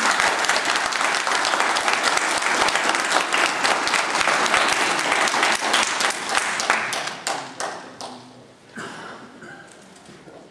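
Audience applauding, dying away about seven or eight seconds in, with a few scattered claps near the end.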